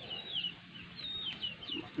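Faint birds chirping: a scatter of short, high, falling chirps in quick succession.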